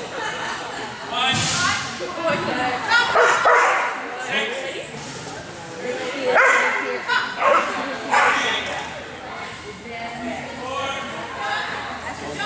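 A dog barking and yipping excitedly, in repeated short high-pitched calls, echoing in a large indoor arena, over background chatter.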